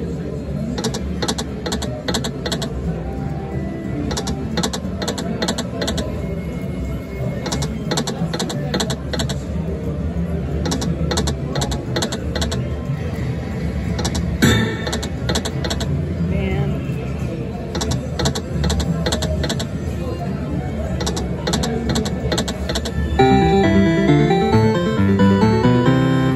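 Jumpin Jalapeños video slot machine spinning again and again: each spin ends in a quick run of clicks as the reels stop one after another, the runs coming about every three seconds, with one louder click about halfway through. Underneath is the steady low din and chatter of a casino floor.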